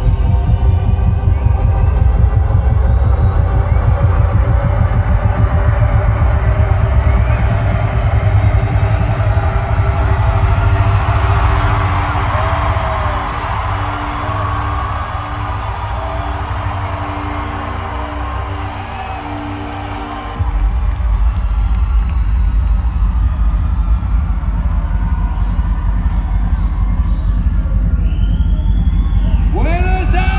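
Electronic dance music over a concert sound system, heavy pulsing bass and a crowd cheering. About twelve seconds in the bass falls away under a held synth chord while the crowd noise swells, then the bass slams back in suddenly about twenty seconds in. Near the end a man's voice shouts over the PA.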